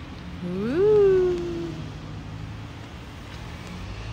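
A single drawn-out wordless "oooh" from a person's voice, about a second and a half long. It glides up in pitch, then holds and slowly falls, the kind of sound someone makes in admiration.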